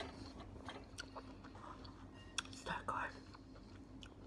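Chewing of pineapple pieces with wet mouth clicks and smacks, and a short, louder mouth sound about three seconds in.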